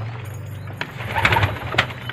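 Domestic pigeons cooing in the loft, with a brief rustling and a few clicks about a second in.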